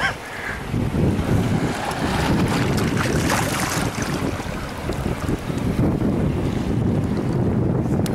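Wind buffeting the microphone, a gusty low rumble, over the wash of shallow sea water lapping among shoreline boulders.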